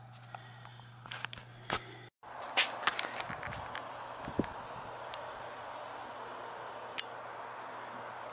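A few soft clicks and taps over a steady low hum, cut off about two seconds in. Then a steady even outdoor background noise with scattered light taps and clicks, mostly in the first second or so after it starts.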